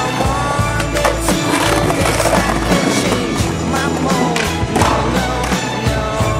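A music track with a steady beat, with a skateboard's wheels rolling on concrete and the board clacking under tricks.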